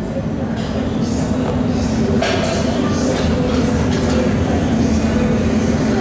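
Loud, steady gym room din: a low rumble with voices in the background, and a short sharp noise about two seconds in.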